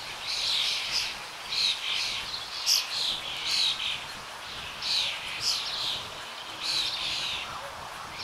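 Birds chirping in short, repeated phrases, about one a second.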